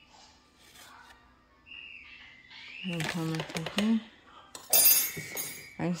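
A short, sharp clatter and clink of kitchen ware, about five seconds in, with a brief ringing tone under it.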